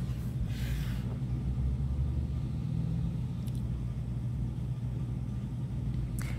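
Steady low hum and rumble of background noise, with a brief soft hiss about half a second in.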